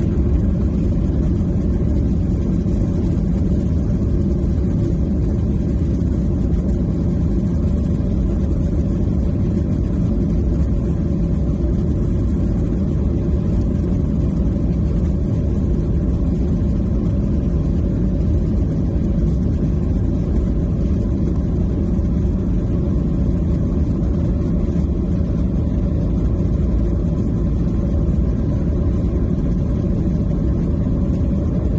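Steady rumble of a jet airliner's engines and airframe heard from inside the cabin as the plane taxis.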